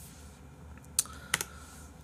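Two sharp clicks at a computer, about a third of a second apart, a little after a second in, over a faint steady room hum.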